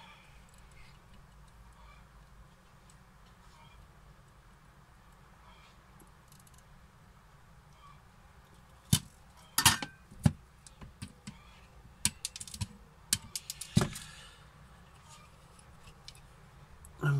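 Low steady hum at first. From about nine seconds in, a run of short clicks and knocks as the circuit board is handled and turned over in a clamping PCB holder, plastic jaws against the board.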